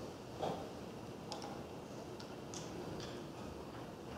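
Quiet lecture-hall room tone with a few faint, irregularly spaced high clicks.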